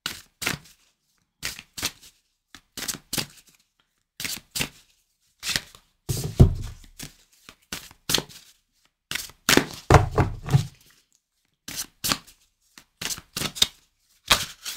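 A deck of oracle cards being shuffled by hand: irregular short rustles and slaps of the cards, with heavier thumps about six seconds and ten seconds in.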